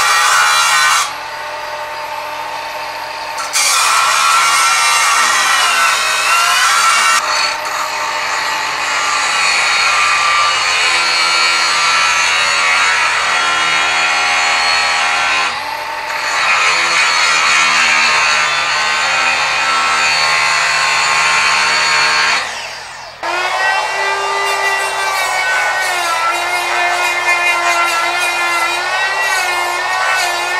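Milwaukee angle grinder cutting into an S7 tool-steel round bar held in a vise, its pitch shifting as it is pressed into the cut and eased off. About 23 seconds in it stops and a die grinder with a small cut-off wheel takes over, whining with a wavering pitch as it cuts the same bar.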